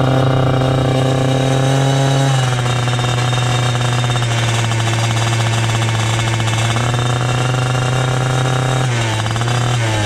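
A racing kart's two-stroke engine, exhausting through an expansion-chamber pipe, running at a steady moderate speed while the kart rolls slowly on a wet track. Its note eases down slightly about two seconds in and wavers near the end.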